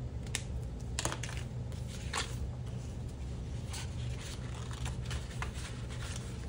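Paper dollar bills and a clear plastic cash envelope rustling and crinkling as the cash is handled and slid in, in a string of short crinkles over a low steady hum.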